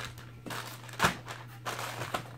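Clear plastic bags of paracord crinkling and rustling as they are handled and set down on a table, with the loudest rustle about a second in.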